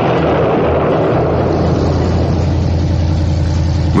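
Piston aircraft engine droning steadily with a strong low hum, rougher and noisier in the first half, smoothing out toward the end.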